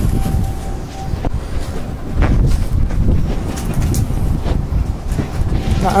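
Strong gusty wind buffeting the microphone: a loud, low rumble that rises and falls with the gusts, with a few short knocks.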